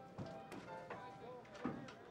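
Background score music over footsteps climbing wooden stairs, a few separate knocks of the treads.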